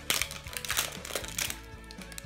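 Crinkly wrapper layer of a toy surprise ball being crumpled and peeled off by hand, a quick run of crackling rustles, over background music.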